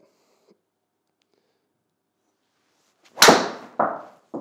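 Honma XP-1 driver striking a golf ball, one sharp crack about three seconds in after near silence at address, struck solidly off the face; a second, quieter knock follows about half a second later.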